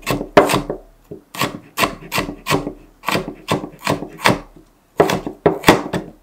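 Large kitchen knife chopping red bell pepper into small cubes on a cutting board: a steady run of sharp knocks, about three a second, with a couple of brief pauses.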